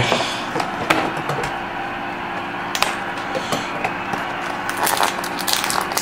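Hands opening a sealed cardboard trading-card box, breaking its seal: scattered sharp clicks and crackles of cardboard, a cluster of them near the end, over a steady background noise.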